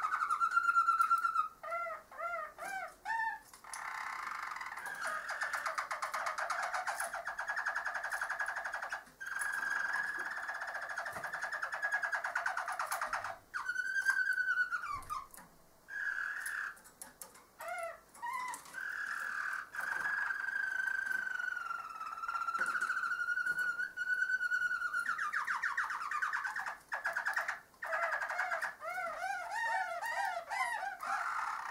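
Harzer Roller canary singing its low rolling song: long unbroken trills and a long held rolling note, broken by short runs of quick rising-and-falling swoops, with a few brief pauses.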